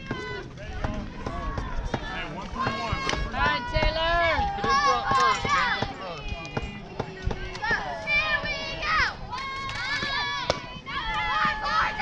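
Several voices, many high-pitched, shouting and cheering over one another with no clear words, some calls drawn out on a held note.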